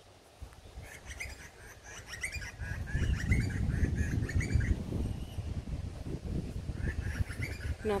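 Birds chirping, a string of short calls in the first half, over a low rumble of wind on the microphone.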